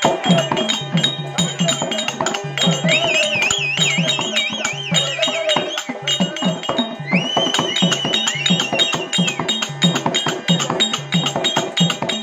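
Live Therukoothu folk-theatre music: hand drums beating a steady fast rhythm with sharp metallic clicks. A high, wavering, ornamented melody line plays over it about three seconds in and again from about seven seconds.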